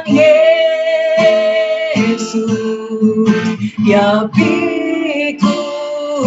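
A woman singing a devotional song into a handheld microphone, accompanied by a strummed acoustic guitar. Her voice holds long notes with a slight waver in pitch.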